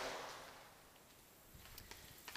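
Quiet room tone with a few faint clicks about a second and a half in.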